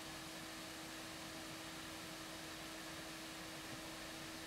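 Noctua NF-A14 iPPC-3000 140 mm industrial fan running steadily as a solder fume extractor, pulling air through its carbon filter. It makes a quiet, even airy hiss with a faint steady hum.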